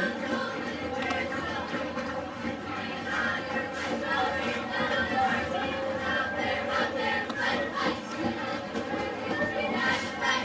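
Music playing over the steady noise of a stadium crowd, with mixed voices in the stands.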